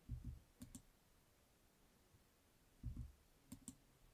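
Faint computer mouse clicks, twice, each a quick pair of sharp clicks: the first about half a second in, the second near the end. A dull low bump comes just before each pair.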